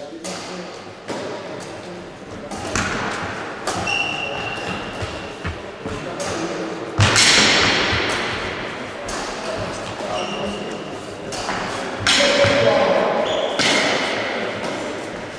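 Badminton rackets striking the shuttlecock, each sharp hit echoing through a large, bare sports hall. The two loudest hits come about halfway through and near the end. Two brief high squeaks are heard, one early and one past the middle.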